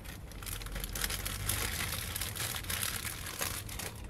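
Plastic bag of potting soil crinkling and rustling as it is handled and set down, a dense crackly rustle from about half a second in until near the end.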